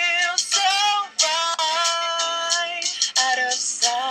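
A man singing a high, held melody into a handheld microphone over his recorded backing beat, the notes bending and breaking off between phrases.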